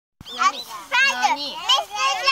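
Young children chattering in high voices, several talking over one another.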